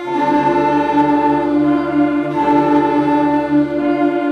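School concert band playing slow, held chords, with the chord changing about two and a half seconds in.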